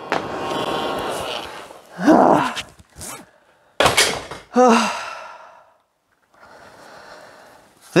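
A man catching his breath with wordless sighs and gasps, and a single sharp knock about four seconds in.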